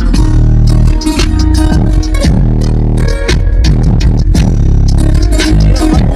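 Music playing loud through a truck's newly installed car audio system, with deep, heavy subwoofer bass under a steady beat.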